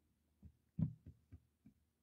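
A few faint, soft taps, about five in a second and a half, the second one the loudest, in an otherwise quiet room.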